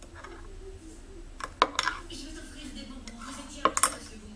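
Metal teaspoon stirring hot chocolate in a cup, clinking sharply against the cup's side in two short runs: a few clinks about a second and a half in and a couple more near the end.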